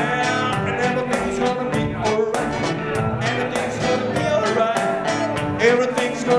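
Live song on a strummed acoustic-electric guitar with a steady rhythm, with voices singing over it.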